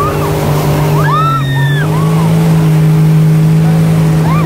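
Sea-Doo GTI jet ski engine running under way at speed, a steady drone that steps up slightly in pitch about two seconds in, with water spray hissing. High, arching squeals from the riders come about a second in and again shortly after.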